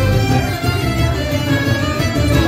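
Live folk band playing an instrumental dance tune: fiddles and diatonic accordion carry the melody over plucked strings, a pulsing acoustic bass guitar and bodhrán.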